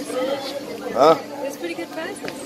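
Indistinct chatter of several people's voices in a busy shop, with one voice rising loudly for a moment about a second in.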